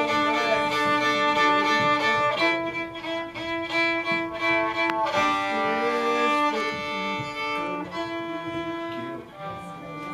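Fiddle bowing long, steady held notes and double stops, moving to a new chord every one to two and a half seconds as the chords of a song are worked out; it gets a little softer near the end.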